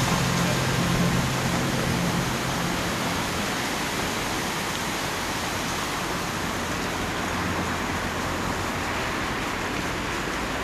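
Steady rushing noise with no clear single source: water, surf, wind or traffic on an open seafront. A low hum under it fades out about two and a half seconds in.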